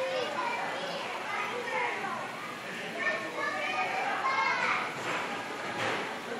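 Several children's voices talking and calling out over one another, with no other sound standing out.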